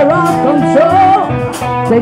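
Live blues-rock band playing loud, amplified: electric guitars over drums, in a stretch without sung words.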